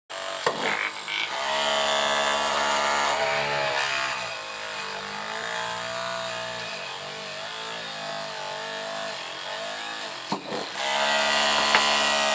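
Homemade mini drill, a small DC motor in a PVC pipe, whining as it drills into a piece of wood. Its pitch sags and recovers as the bit is pressed in.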